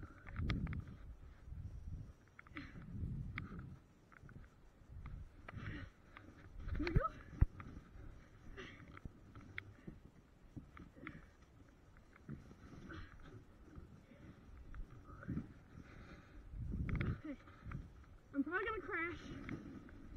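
Footsteps crunching through snow, with bumps and rustling from handling a plastic sled, picked up close on a body-worn action camera's microphone. About a second and a half before the end comes a short, wavering, high voice-like call.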